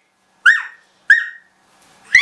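A toddler's two short, very high-pitched squeals, a little over half a second apart.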